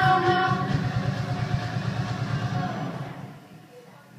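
Backing-track music over a hall PA: a held chord over a steady pulsing beat, fading out about three seconds in.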